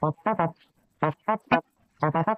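A voice uttering short pitched syllables in two quick runs about a second apart.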